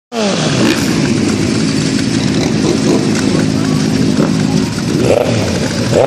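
Old Ducati motorcycle engine running: the pitch drops right after a rev, holds steady at low revs, then rises and falls again with a throttle blip about five seconds in as the bike pulls away.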